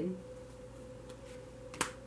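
A single sharp click near the end, as a hand reaches in over tarot cards laid out on a cloth-covered table, with one or two faint ticks before it. Under it runs a faint steady hum.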